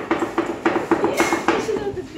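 Metal cookware and utensils clinking in a quick, regular rhythm, with voices mixed in.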